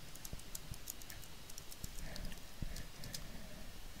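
Faint, irregular clicks of computer keyboard keys as a login name and password are typed.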